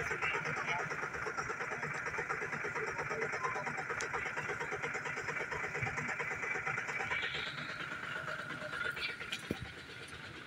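A vehicle's engine running steadily at idle, with an even low pulsing, easing off slightly near the end.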